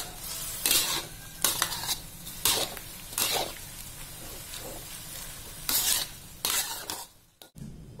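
A spatula scraping and stirring sliced banana blossom in a sizzling metal wok: short scrapes about once a second over a steady sizzle. It falls nearly silent shortly before the end.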